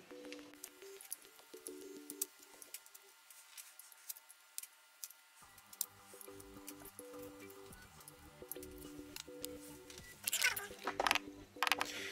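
Quiet background music of soft held notes, which drops out for a few seconds partway through. Under it come faint small clicks of a screwdriver prying rubber caps off the cells of small sealed lead-acid batteries.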